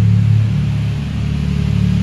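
Steady low rumble, strongest in the first half second.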